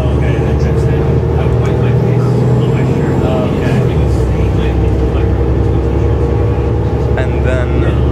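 Cabin sound of a Mercedes-Benz O530 Citaro city bus under way: its OM906hLA six-cylinder diesel runs with a steady low drone. The engine note shifts about four seconds in. Voices are heard in the background.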